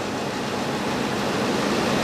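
A steady, even hiss of background noise in a hall, with no speech.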